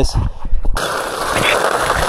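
A few low knocks as a cordless pole-mounted power tool is handled, then its motor switches on suddenly about three-quarters of a second in and runs steadily.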